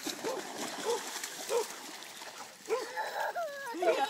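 A dog splashing through shallow lake water, with a few short barks about every half second; a voice-like call near the end.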